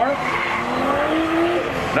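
Drift car engine revving, its pitch climbing steadily for about a second and a half and then dropping, over the hiss and squeal of tyres sliding sideways.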